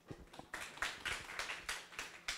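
An audience applauding: a few hand claps at first, then many people clapping together from about half a second in.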